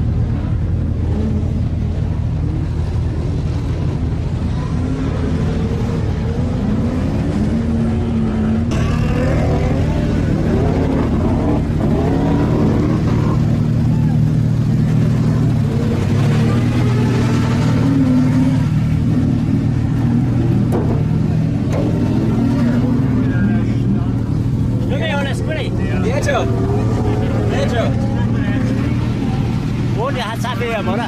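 Engines of lined-up stock cars from the modified over-1800 cc class idling, a steady low hum with a slight change in pitch about halfway through. People talk over it from about nine seconds in.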